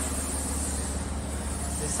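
A steady low rumble with an even light hiss over it.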